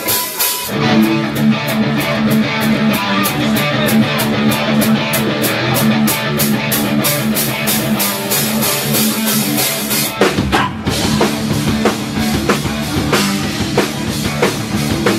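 Live rock band playing: a drum kit with steady cymbal strokes about four a second over sustained guitar and bass notes. About ten seconds in the music dips briefly, then the drums come back in a heavier pattern.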